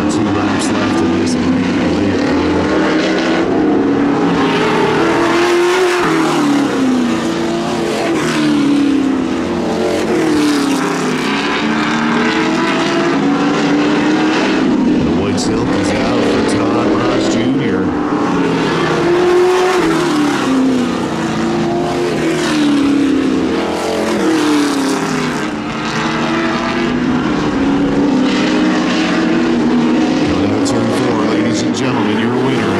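Sportsman stock car engine running hard around the track, its note climbing and falling again and again as the car accelerates and lifts off.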